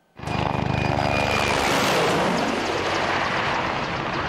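Mi-24-type attack helicopter flying past low, its twin turboshaft engines and rotor loud and steady, with the rapid beat of the rotor blades.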